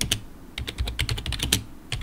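Rapid typing on a computer keyboard: a quick run of keystrokes that stops about three-quarters of the way through, then a single last key press near the end.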